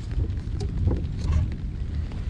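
Uneven low rumble of wind buffeting the camera microphone, with a few faint clicks.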